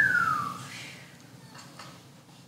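A single falling whistle, one clear note sliding down in pitch over about two-thirds of a second, followed by faint room noise.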